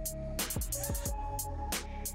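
Background music with a steady beat and sustained tones.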